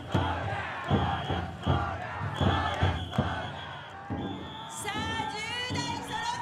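Big drum on a taikodai festival drum float beaten in a steady beat, about one heavy stroke a second, with a crowd of bearers shouting in chorus. The beats weaken in the last couple of seconds.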